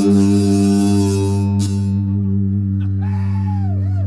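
Live band holding one sustained chord, low notes ringing steadily while the brighter upper notes fade away over the first couple of seconds. Near the end, wavering, swooping pitch glides sound faintly over the held chord.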